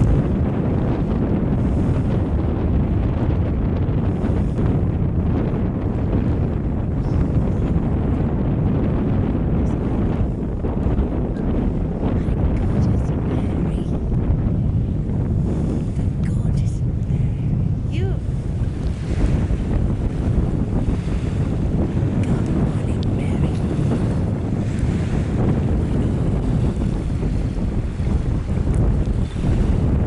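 Wind buffeting the camcorder microphone: a steady low rumble with no distinct events.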